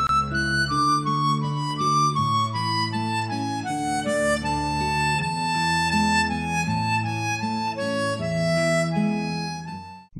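A harmonica playing a slow melody of held notes, with low sustained notes underneath. It fades out near the end.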